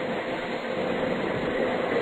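Steady background hiss of an old speech recording, with a faint, even hum under it, in a pause between spoken phrases.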